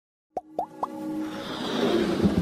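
Logo intro sound effects: three quick plops, each one higher than the last and about a quarter second apart, then a swell of music that rises and builds.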